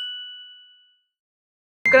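A single bright ding, a bell-like chime sound effect that fades away over about a second into dead silence.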